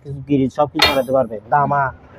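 A single sharp metallic clang about a second in, ringing briefly, as if from scrap metal being handled, heard among people talking.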